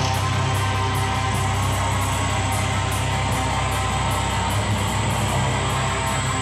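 Distorted electric guitar through a Marshall amp, a chord held and ringing steadily, with the amp's low mains hum underneath.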